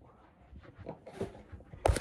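Faint scattered rustling, then a single sharp knock just before the end, taken for someone bumping their head.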